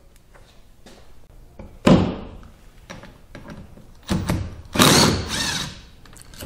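Tools and a steel cam phaser being handled on a workbench: a sharp thud about two seconds in, then metallic clattering in the last two seconds as a socket is picked up and set on one of the phaser's cover bolts.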